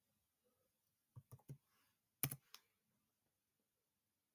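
A few short clicks from computer keys or buttons in an otherwise near-silent room: three quick clicks a little over a second in, then the loudest click just after two seconds and one more about half a second later.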